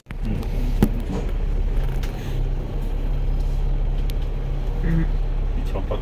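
Steady low hum of a moving bus's engine and road noise, heard from inside the cabin, with a single sharp click about a second in.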